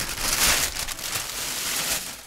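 Thin plastic carrier bag full of washi tape rolls crinkling and rustling loudly as it is handled and moved away: really noisy.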